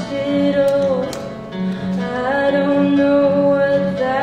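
A song performed live: a voice singing long held notes over acoustic guitar accompaniment, the first note dipping in pitch about a second in before another long note is held.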